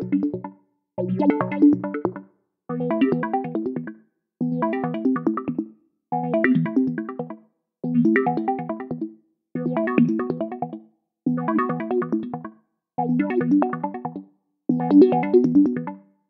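Eurorack modular synthesizer patch: square-wave chords run through a Morphing Filter Bank formant filter and a low-pass gate. They sound as about ten chords, one every second and a half or so, each a burst of quick plucked notes that cuts off before the next begins.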